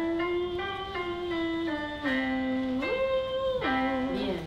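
Music: a slow melody of long held notes that slide from one pitch to the next, rising about three seconds in and dropping back near the end.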